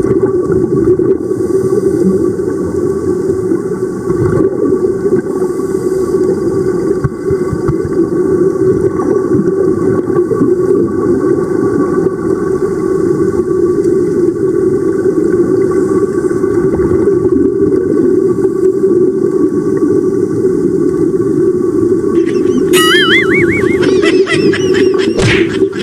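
Steady low underwater rumble of water and rising air bubbles on a submerged camera's microphone. Near the end a warbling high whistle comes in over it.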